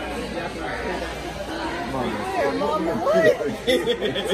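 Only speech: people talking across a table, with background chatter.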